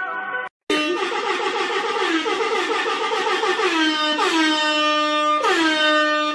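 A loud, held, horn-like note, rich in overtones, that slides down in pitch twice near the end before cutting off.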